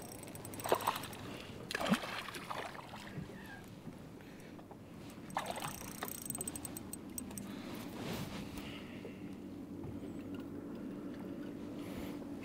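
A hooked bass being reeled in to a boat: scattered splashes and fine reel ticking over lapping water, with a low steady hum coming in about halfway through.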